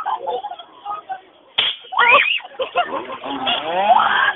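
A sudden sharp crack about one and a half seconds in, followed by high voices gliding up and down in pitch.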